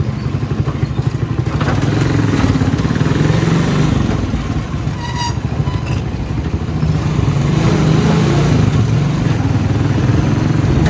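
Motorcycle engine running under a moving ride, with road and wind noise. A short, high-pitched beep sounds about five seconds in.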